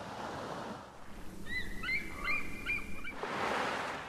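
Open-air ambience over the sea: a steady wash of wind and water. A quick run of short, high chirps comes from about a second and a half in until about three seconds, and the hiss swells near the end.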